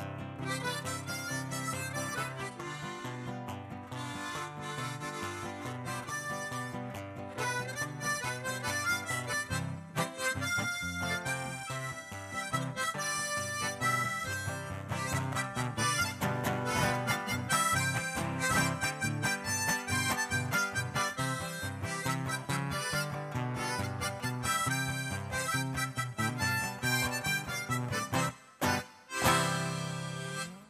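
Diatonic harmonica played solo into a stage microphone: a continuous fast-moving tune that grows louder about eight seconds in.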